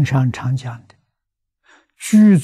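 An elderly man speaking Mandarin in a lecture. His phrase trails off about a second in. A pause follows, with a faint in-breath near the end.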